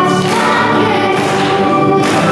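Girls' children's choir singing a Polish church song together, with electric keyboard accompaniment.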